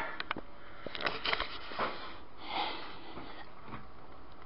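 A few light clicks and rattles of hands working at a light fitting to get its bulbs out, followed by two soft breaths.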